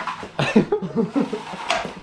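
A young man laughing: a breathy burst, then a run of short pitched bursts, with a sharp click near the end.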